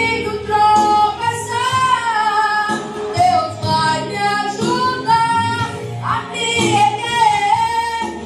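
A woman singing a gospel song into a handheld microphone, amplified, over an instrumental backing; her long held notes waver with vibrato.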